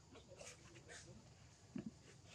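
Near silence with a few faint, short squeaks from macaques, and a brief low sound near the end.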